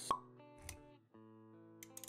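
Intro sting music of held notes with a sharp plop sound effect just after the start, followed by a brief low thud.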